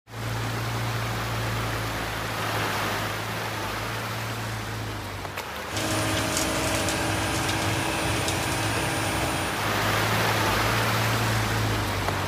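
Steady outdoor rushing noise with a low hum like a running engine. After a cut about six seconds in, a steady engine drone with a few held tones comes in for several seconds, then the rushing noise carries on.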